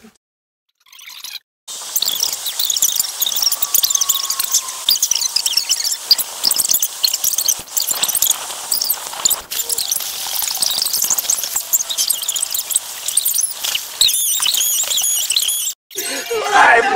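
A group of young girls squealing and shrieking, many high voices overlapping, starting about two seconds in.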